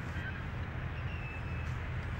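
Steady low outdoor background rumble with a faint, thin high tone in the middle.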